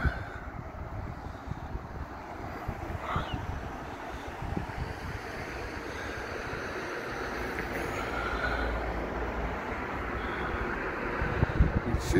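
Steady outdoor seafront background noise, a low rumble under a soft hiss, with the rumble growing a little stronger in the second half.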